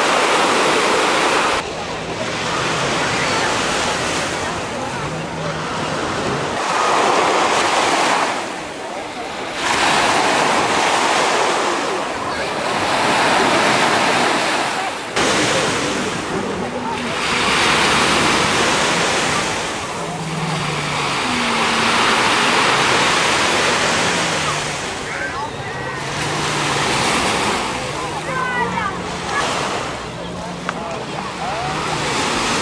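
Small sea waves breaking on a sandy shore, the surf swelling and fading every few seconds, with faint voices of bathers in the background.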